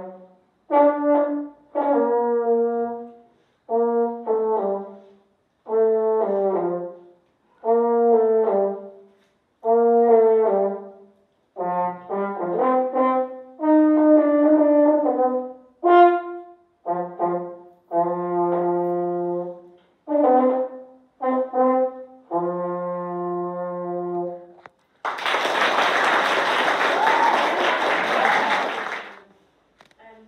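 A brass instrument played solo: a melody in short phrases with breath gaps between them, closing on a longer held low note. Applause follows about 25 seconds in and lasts about four seconds.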